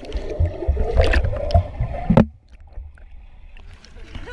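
Swimming heard underwater through a GoPro's waterproof housing: muffled churning and bubbling of water with a low rumble. It cuts off suddenly a little past halfway, leaving a much quieter hiss.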